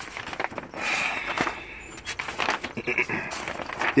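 Paper pages of a road atlas being flipped, rustling and flapping in uneven bursts; a man clears his throat near the end.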